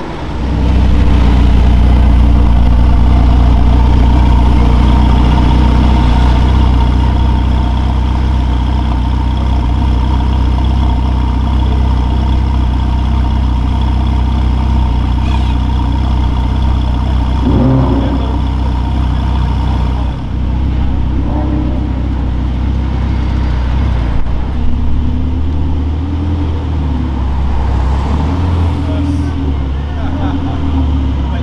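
Supercar engines running at a steady idle. In the last few seconds an engine's pitch rises and falls in short revs.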